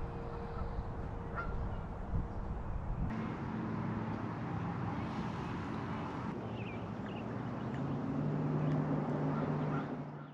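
Outdoor lakeside ambience: a steady rushing background with a few short bird chirps. The background changes abruptly about three and six seconds in, and a low steady hum joins near the end.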